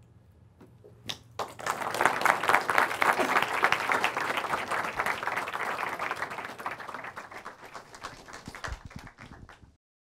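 Audience applause after a talk, rising about a second and a half in, fullest early on, then thinning out and cutting off suddenly near the end.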